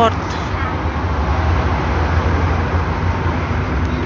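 Steady background noise with a low hum and faint voices, the general din of a busy shopping area. A short spoken word comes right at the start.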